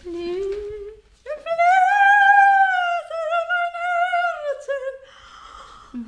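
A woman singing a vocal exercise: a short rising slide, then a high note held for about two seconds with a light vibrato, then a second phrase at about the same pitch. A short breathy sound follows near the end.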